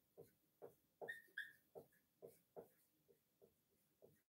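Dry-erase marker writing on a whiteboard: about ten faint short pen strokes, with two brief high squeaks of the marker tip about a second in.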